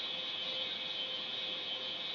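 Steady background hiss with a faint constant hum underneath, and no speech.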